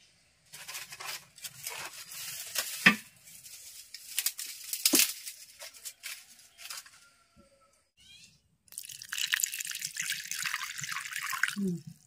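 Irregular knocks, scrapes and crackles of firewood being handled at a wood-burning mud hearth, then, about nine seconds in, some three seconds of steady wet, splashy noise that stops just before the end.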